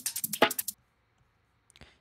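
Drum and bass breakbeat loop playing back: sharp snare and hi-hat hits of a sampled break with accent snares in it. The hits cut off suddenly as playback stops, under a second in.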